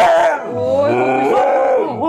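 Husky howling: a short high note at the start, then one long howl that rises and falls in pitch.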